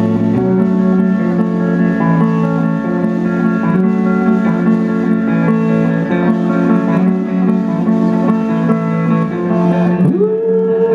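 Live indie rock band playing an instrumental passage between verses: electric guitar over bass and drums, with no singing.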